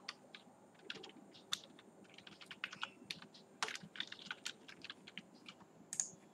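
Faint computer keyboard typing: irregular runs of light key clicks, quickest in the middle, with one sharper click at the very end.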